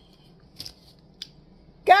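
Quiet room tone with a short, soft rustle about half a second in and a faint click a little later. A woman starts talking near the end.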